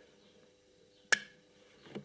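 A single sharp click about a second in as the CNC touch probe and its stylus mount are handled, otherwise quiet.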